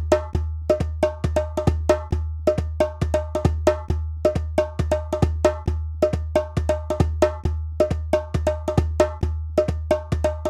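Percussion music: a steady rhythm of short, pitched drum strokes, about three or four a second, over a continuous low drone.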